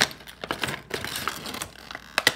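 Cardboard box and plastic wrapping rustling while small toy pieces are pulled out, a run of irregular sharp clicks and rustles.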